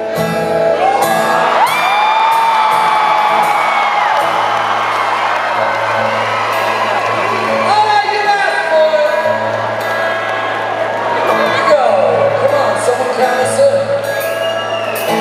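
Acoustic guitars playing a slow intro over a cheering concert crowd, with long drawn-out whoops and yells from fans close by.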